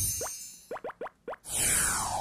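Cartoonish sound effects of a TV programme's animated logo transition: a whoosh dies away, then a quick run of short rising pops, and a falling swoosh near the end leads into background music.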